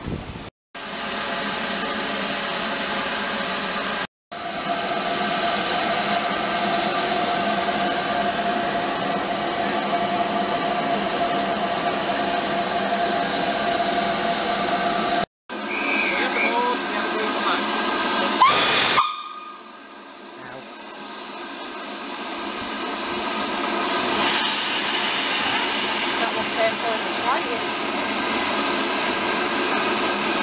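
Steam hissing steadily from a standing steam locomotive, with a steady tone running through it for several seconds and three brief sharp gaps. About two-thirds of the way through a short loud blast sounds, after which the hiss falls away and then slowly builds back up.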